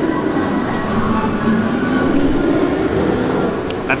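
Steady low rumble of outdoor background noise with faint wavering tones above it, and a word of speech at the very end.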